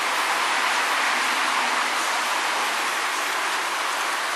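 Steady, even rushing background noise with no distinct events, its energy in the middle and high range.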